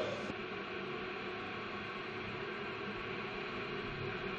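Steady low hiss with a faint hum, the background noise of the audio feed; no engine sound comes through.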